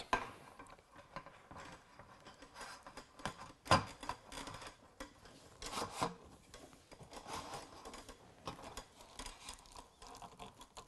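Roll-top aluminium slat table surface being handled and clipped onto the aluminium frame of a camping kitchen table: quiet rattling and rubbing of the slats, with a sharper knock about four seconds in and a couple of clicks around six seconds in.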